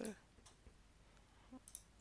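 Near silence: room tone with a few faint computer mouse clicks, the clearest near the end.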